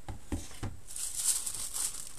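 Tissue paper wrapping rustling and crinkling as it is lifted and folded back, starting about a second in, after a few light knocks of hands on the box.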